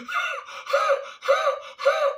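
A man panting heavily on purpose: four loud, gasping breaths about half a second apart, a mock imitation of someone out of breath.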